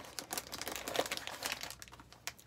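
Snack packaging crinkling and rustling as a snack box is rummaged through, a dense run of small crackles.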